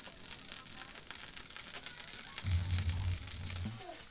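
Margarine sizzling in a hot frying pan as it melts, a faint crackle of many small pops. A low rumble joins in about two and a half seconds in and stops about a second later.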